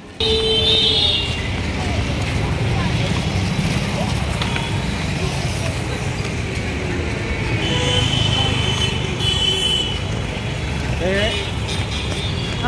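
Busy street traffic with vehicle horns honking, once just after the start and again about eight to ten seconds in, over a steady low rumble.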